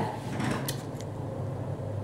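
A low steady hum with two faint clicks, about two-thirds of a second and a second in, as the camera is handled and swung round.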